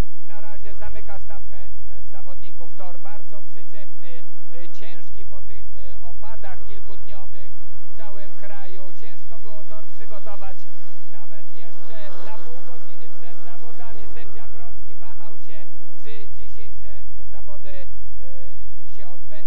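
Speedway motorcycles racing, their 500 cc single-cylinder methanol engines rising and falling in pitch, mixed with a man's voice. A heavy low rumble comes and goes in long stretches.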